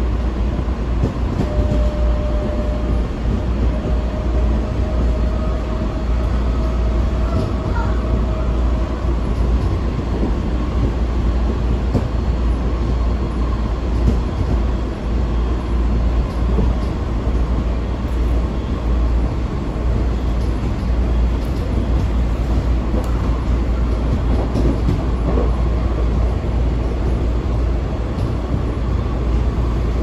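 A Washington Metro railcar running at speed, heard from inside the car: a steady low rumble of wheels on the rails and the car's running gear. A faint, high, steady whine comes through for several seconds near the start.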